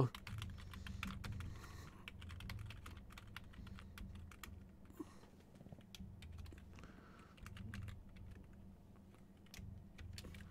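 Faint typing on a computer keyboard: quick, irregular key clicks as a command is typed, over a low steady hum.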